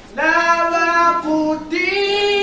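A woman singing unaccompanied, holding long steady notes, with a short break for breath near the end.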